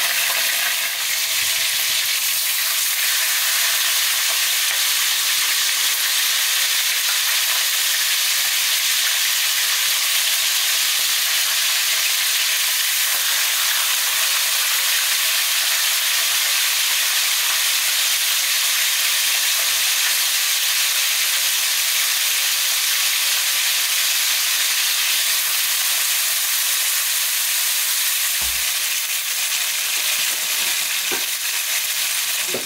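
Whole fish frying in hot oil in a pan, a steady sizzle.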